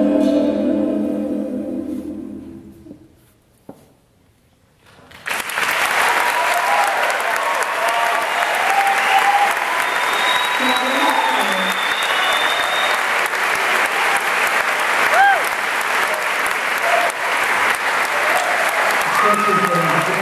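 A vocal ensemble's final held chord fades away over the first few seconds, leaving a brief near-silence. Audience applause then breaks out suddenly about five seconds in and keeps going, with whistles and cheers over it.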